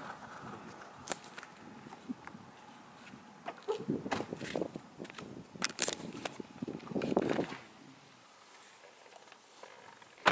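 Scattered footsteps, knocks and rustling as someone walks around a car and climbs into the seat, with a cluster of clicks and bumps in the middle and quieter toward the end.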